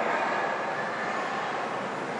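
Steady, even background hiss of room noise, with no tones or distinct events.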